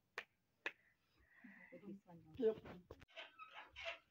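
Two sharp clicks about half a second apart, followed by a brief hiss and a woman's voice saying "yep".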